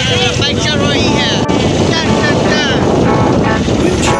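Motorcycles riding along at speed, with wind buffeting the phone's microphone and voices shouting over the engine noise.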